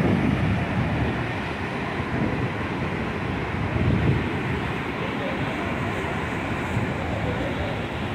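Saraswati River torrent rushing steadily as it pours through a narrow rock gorge as a waterfall.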